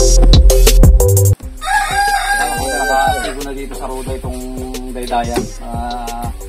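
Background music with a steady beat breaks off abruptly just over a second in and goes on quieter. Right after the break a rooster crows once, for about a second and a half.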